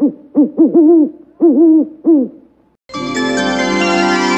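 A series of owl hoots in two quick groups, each call bending up then down in pitch, the sound of an Owl Communications logo. About three seconds in, a sustained organ-like music chord starts.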